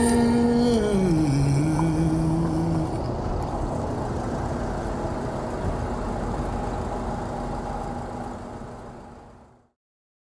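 The last held notes of the music glide down and end within the first three seconds, leaving a vintage open-top car's engine running steadily. The engine sound fades out and cuts to silence just before the end.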